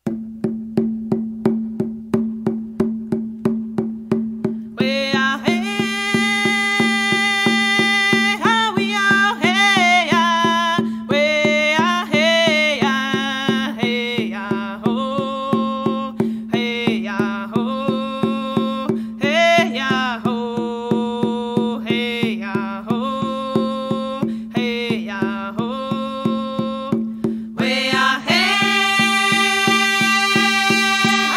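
Song honouring the spirit of the water: a drum struck at a steady quick pulse, about three beats a second, over a held low tone. A voice starts singing about five seconds in, in phrases with short pauses between them.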